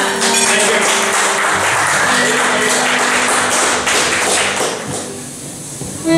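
Live folk band music: strummed acoustic guitar and frame drum over held accordion tones. It thins out and quietens near the end, and a loud sustained accordion chord comes in right at the close.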